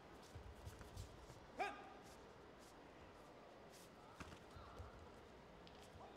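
Quiet arena room tone with soft, low thuds of taekwondo fighters' feet bouncing on the mat in the first second, and one short high-pitched sound with a falling pitch about a second and a half in.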